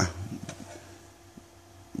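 Low steady hum with a few faint clicks as a hand works the rocker switches on a CB amplifier's front panel.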